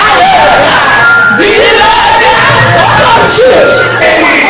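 A crowd of people shouting together over music, many voices rising and falling in pitch at once.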